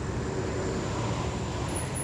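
Passing road traffic: a steady, even noise of car engines and tyres.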